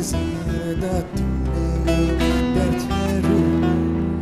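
Instrumental Turkish folk music: a nylon-string classical guitar plucked and strummed over a sustained bass, with a melody line sliding between notes.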